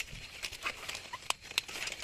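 Irregular light clicks and rustling of stiff pineapple leaves brushing and snapping as someone walks through the plants, with soft footsteps.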